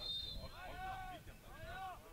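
A short high referee's whistle blast at the start, signalling the free kick, then players shouting on the pitch: two drawn-out calls, picked up faintly by the pitch-side microphones.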